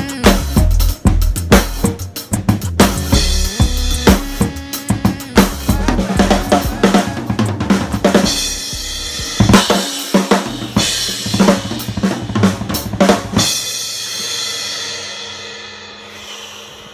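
Acoustic drum kit played along with a recorded backing track: kick drum, snare, hi-hat and cymbals over a bass line. About thirteen and a half seconds in the playing stops on a final cymbal hit that rings and fades away.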